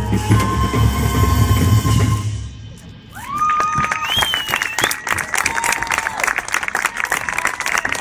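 Marching band brass and percussion holding a last loud chord, which dies away about two and a half seconds in. The audience then breaks into applause and cheering.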